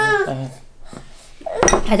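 A toddler's whining cry trails off, then a ceramic mug is set down on a wooden table with a sharp knock about one and a half seconds in.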